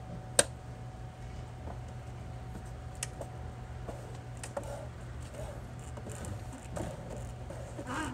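The inner window frame of an RV entry door clicking onto its retaining clips as it is pushed in by hand. There is one sharp click about half a second in and a few fainter ones around three and four and a half seconds. Each click is a clip seating, and the frame is fully home once no more are heard.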